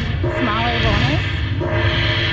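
Casino slot machine playing its win-tally sounds as the bonus win meter counts up, with short held tones and gliding electronic notes over a steady low hum.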